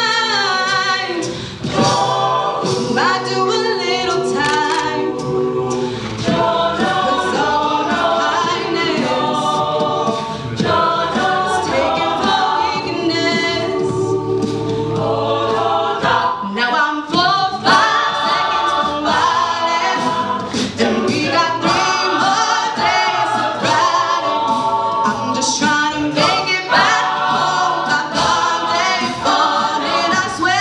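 A mixed-voice a cappella group singing a pop arrangement, with a soloist on microphone over backing voices and mouth-made vocal percussion keeping the beat.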